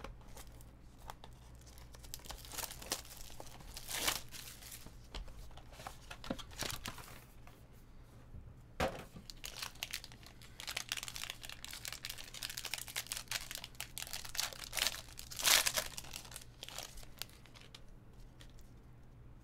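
Foil trading-card packs being torn open and crinkled by hand, with a cardboard box being handled, in irregular bursts of crackling. The loudest burst comes near the end.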